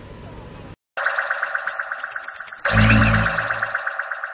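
A short electronic logo jingle: a bright chiming tone pulsing rapidly, joined by a deep boom about two and a half seconds in, then slowly fading. Before it, under a second of steady outdoor background noise cuts off abruptly.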